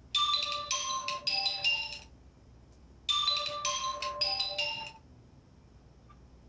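Smartphone ringing: a short tune of several clear notes, played twice, each time for about two seconds, with a short pause between.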